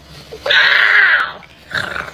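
An agitated house cat, held against its will, lets out one harsh growling yowl a little under a second long.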